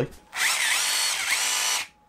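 1/10-scale Axial RC crawler truck's 35-turn brushed electric motor and gear drivetrain spinning up with the wheels off the ground. It makes a whirring whine that rises and falls in pitch for about a second and a half, then cuts off. This is a first test that the ready-to-run truck drives after the battery is plugged in.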